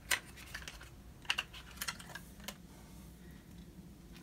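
Several light clicks and taps in the first two and a half seconds as a small plastic cosmetic container, a liquid highlighter, is handled.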